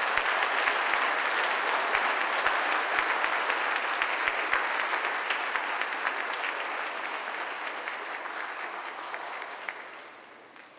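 Audience applauding, the clapping fading away over the last few seconds.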